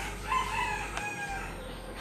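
A rooster crowing once: one drawn-out call that drops slightly in pitch.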